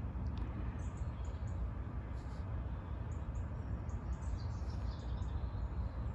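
Outdoor ambience at a pond: a steady low rumble with a few faint, short high chirps from small birds scattered through it.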